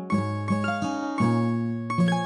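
Background music: a gentle plucked-string instrumental, single notes picked one after another about three a second over a low bass note.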